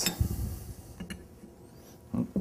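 Steel wrenches handled against a metal valve body on a cloth-covered bench: a soft knock just after the start, then a couple of light metallic clicks about a second in, with faint rubbing between.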